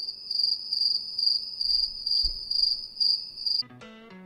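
Cricket chirping sound effect: a steady, high trill pulsing about three times a second, then cutting off suddenly shortly before the end. It serves as the familiar awkward-silence gag after a fumbled moment.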